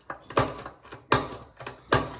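Manual tile cutter snapping scored tile as its handle is pressed down: three sharp cracks about three-quarters of a second apart, with lighter clicks between.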